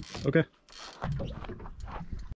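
Camera handling noise: a brief hiss, then a low rumble with scattered light knocks as the camera is moved about and pointed down at the boat deck.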